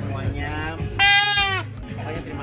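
A trumpet-shaped party horn blown once about a second in: one steady high note lasting about half a second, louder than the music and chatter around it.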